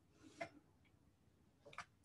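Near silence, with two faint, brief clicks: one about half a second in and one near the end.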